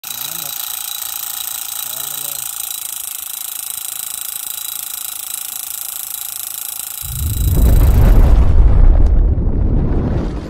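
Remote-control model tractor's motor whining steadily as it drives a model water pump, with water pouring from the outlet pipe into the field. About seven seconds in, a much louder deep rumbling whoosh takes over, a sound effect for a fiery title animation.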